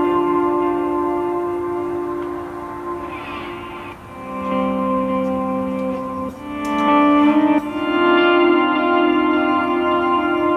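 Slow ambient instrumental played live on lap steel guitar and keyboard: long held chords that change every couple of seconds, with a brief wavering slide in pitch about three seconds in.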